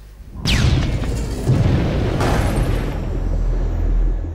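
Logo sting sound effect: a sudden falling whoosh about half a second in, then a deep booming rumble with a brighter crash just past two seconds, slowly fading.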